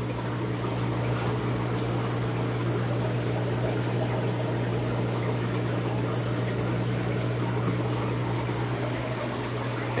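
Fish-room aquarium equipment running: a steady low hum from air pumps with bubbling, trickling water from the tanks' air-driven filters.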